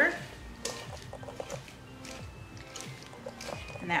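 Spatula stirring oiled, seasoned cauliflower florets in a glass bowl: soft, wet, squishy scrapes and light knocks against the glass, over quiet background music.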